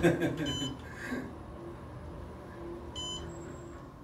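Two short electronic beeps about two and a half seconds apart from an Otis Series 6 traction elevator car's signal as it travels down. They sound over the car's steady low ride hum.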